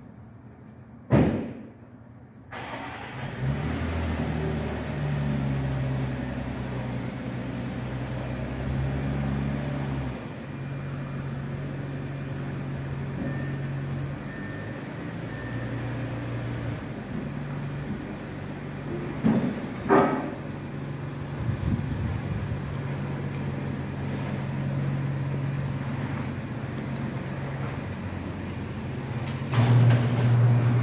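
Audi Q7 engine starting about two and a half seconds in, after a single sharp knock, then running at idle with its pitch stepping up and down a little. A few short knocks come around two-thirds of the way through, and the engine gets louder near the end.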